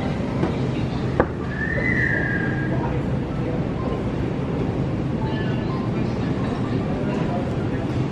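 Shopping cart wheels rolling steadily over a tiled store floor, a continuous low rumble and rattle, with a click about a second in and a brief high-pitched squeak soon after.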